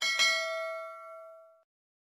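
Notification-bell ding from a subscribe-button overlay animation: a bright chime struck once, ringing with several clear tones and fading out over about a second and a half.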